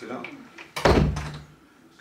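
A single heavy thud about a second in, with a short low hum ringing after it, following a man's brief spoken instruction.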